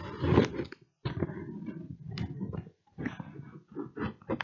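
Irregular rustling and handling noise in short noisy stretches, with a few sharp clicks near the middle and the end.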